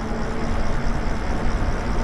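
Wind rushing over the microphone with tyre noise from a Lyric Graffiti e-bike rolling along a paved street, plus a faint steady hum.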